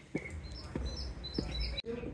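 Songbirds chirping, with a quick run of short, high chirps in the middle. Under them are footsteps on a wooden plank walkway, three soft knocks about 0.6 s apart, and the sound cuts out abruptly near the end.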